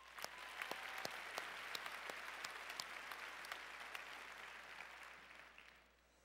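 Audience applauding: a steady patter of many hands clapping that begins at once and dies away over the last second.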